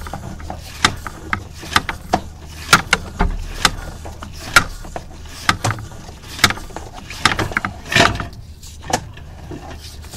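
Sewer inspection camera being pushed down a drain line, with irregular sharp clicks and knocks from the push cable and camera head, one or two a second and a denser clatter about eight seconds in, over a steady low hum.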